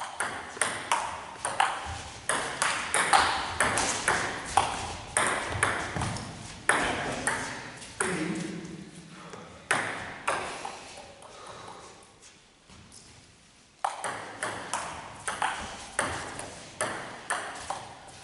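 Table tennis rallies: a celluloid ball clicking back and forth off rubber bats and the tabletop, echoing in a sports hall. There are two runs of quick hits, with a short pause near two-thirds of the way through before the next serve.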